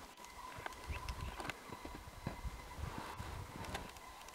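Skis crunching through snow in uneven, repeated strides, with short clicks among the low thumps.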